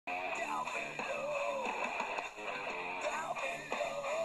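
A rock song with guitar playing from the speaker of a Tecsun PL-310 portable radio tuned to 67.10 MHz in the OIRT FM band. It is a distant station picked up by sporadic-E skip.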